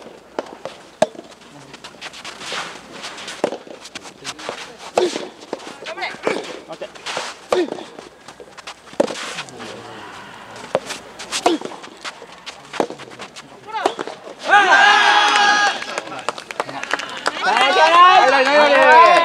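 Soft tennis rally: rackets hitting the rubber ball at irregular intervals of about a second. From about 14 s the players shout loudly as the point ends, twice.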